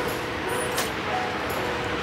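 Steady outdoor background noise, a rumble and hiss like distant traffic, with a few faint clicks about every three-quarters of a second.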